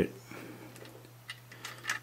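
Faint plastic clicks and rubbing from a LEGO brick model being turned over in the hand, over a steady low hum.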